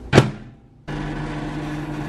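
A single sharp knock or thump, then, starting abruptly about a second in, a steady low machine hum with a hiss over it.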